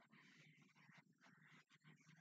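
Near silence: faint room tone with some indistinct low-level noise.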